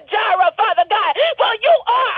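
A person praying aloud in rapid, sing-song speech with strong rises and falls in pitch, heard over a telephone line with a thin, narrow sound.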